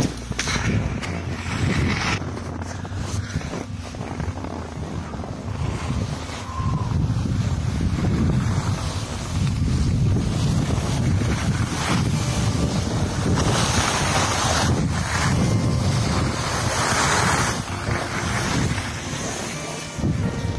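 Wind rushing over the camera microphone while skiing downhill at speed, rumbling and swelling in waves, with a hiss of skis sliding over packed snow that grows stronger in the second half.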